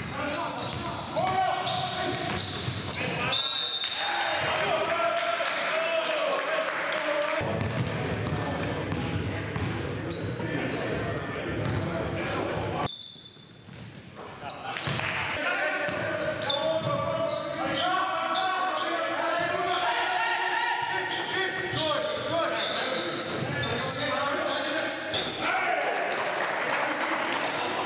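Live basketball game sound in a gym: a basketball bouncing on the hardwood floor and players' unintelligible voices echoing around the hall. The sound drops out briefly about thirteen seconds in, then picks up again.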